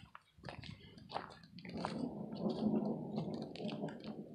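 Footsteps crunching on a leafy, twig-strewn forest trail, with a low rolling rumble of distant thunder that builds about a second and a half in and fades near the end.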